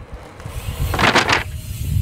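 A mountain bike rolling in over tarmac to a folding plastic kicker ramp, over a steady low rumble. About a second in there is a short, loud rushing noise, and a low thump comes near the end.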